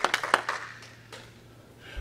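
A few last scattered hand claps in the first half second, then quiet room tone with a steady low hum.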